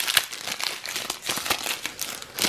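Foil wrapper of a Panini Adrenalyn XL trading-card booster pack crinkling as it is torn open by hand: a dense, irregular run of crackles.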